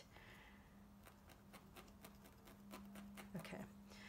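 Near silence with faint, rapid ticks, about four or five a second, of a felting needle stabbing wool roving into a foam felting pad, over a faint steady hum.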